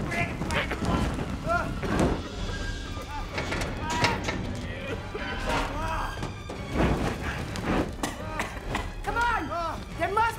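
Action film soundtrack: music under a run of thuds and knocks, with short wordless vocal sounds, strongest near the end.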